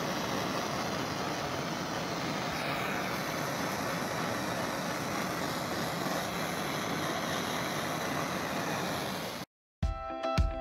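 Handheld torch flame burning with a steady hiss. It cuts off abruptly about nine and a half seconds in, and music begins just after.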